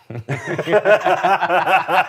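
A man laughing: a fast, unbroken run of 'ha-ha' pulses that begins just after the start and carries on throughout.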